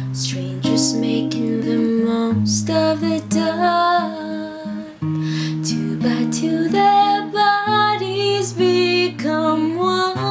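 Steel-string acoustic guitar strummed through a slow D–A–Bm–G chord progression, capoed at the first fret. A voice sings a verse line over it for most of the stretch.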